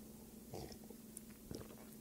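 Faint sipping and swallowing from a mug: a few soft, short mouth sounds over a low steady hum.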